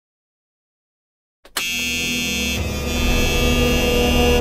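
Silence for about a second and a half, then a loud, harsh, buzzing sound effect with many overtones cuts in suddenly and runs on for about three seconds, shifting slightly partway through.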